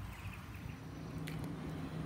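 Faint outdoor ambience on a wet, overcast day: a low steady hum and one soft tick just over a second in.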